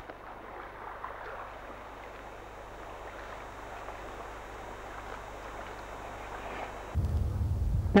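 Steady wash of choppy, wind-blown lake water. In the last second a low rumble of wind buffeting the microphone comes in.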